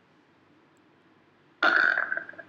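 Near silence for about a second and a half, then a man's voice starts speaking in Arabic near the end.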